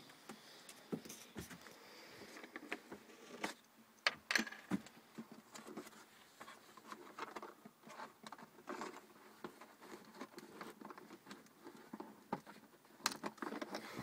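Irregular light clicks, taps and rustles of a hand handling the cardboard-and-tube drive mechanism of a model minigun, with one sharper knock about four seconds in. No motor is running.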